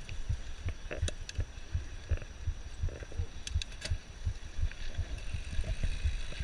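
Mountain bike jolting down a rough dirt trail, picked up by a chest-mounted camera: an irregular run of low thuds with a few sharp clicks and rattles.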